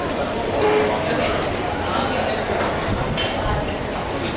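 Indistinct chatter of many people over a steady background noise, with no single voice standing out.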